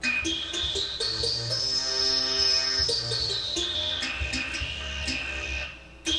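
Godin ACS guitar played through a Roland guitar synthesizer: picked notes with a held synth tone whose high pitch glides up, holds, then slides back down.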